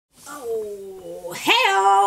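A woman's drawn-out playful vocal sound, cat-like: a sliding call that falls in pitch, then swoops up into a loud held high note about halfway through.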